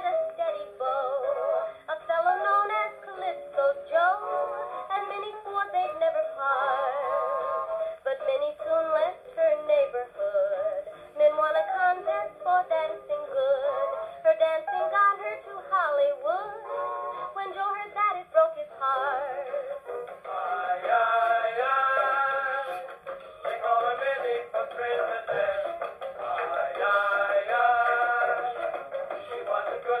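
Kompact Plaza compact gramophone playing a 78 rpm record of dance-orchestra music through its horn, the sound thin and mid-range with little bass or treble. The playing grows fuller from about two-thirds of the way in.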